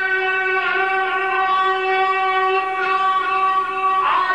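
A male Quran reciter's voice holding one long, steady note on a prolonged vowel (a madd) in melodic mujawwad recitation, amplified through a microphone. Right at the end the held note gives way to a moving, falling phrase.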